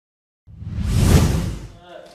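A whoosh transition sound effect from a TV news edit. After a brief dead silence, a single rush of noise swells over about a second and fades away.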